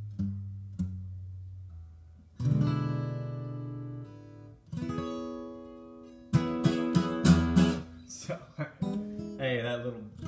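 Acoustic guitar played alone. A low note rings and fades, then two strummed chords are each left to ring out, then a short run of strumming about six seconds in, and a few short plucked notes near the end.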